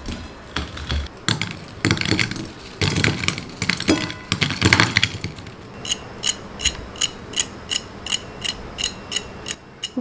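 Crisp fried chicken popcorn pieces tumbling out of a wire mesh strainer onto a ceramic plate: irregular light clatters and taps. About six seconds in comes a quick, even run of light metallic taps, about three a second, from a fork tapping a crisp fried piece.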